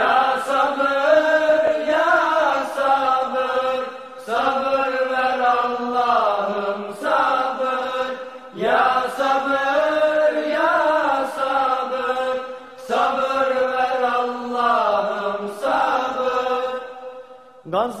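Unaccompanied ilahi, a Turkish devotional hymn with no instruments. The voices hold long notes with slow ornamented bends, in four phrases of about four seconds each with brief breaths between them.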